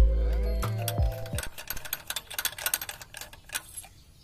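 Background music ending about a second in, followed by a run of light, irregular clicks and scrapes of a metal tool working over the exposed cylinder head, among the camshaft and valve springs.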